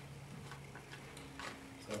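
A few faint clicks from a computer mouse, the sharpest about one and a half seconds in, over a steady low hum. A man's voice starts right at the end.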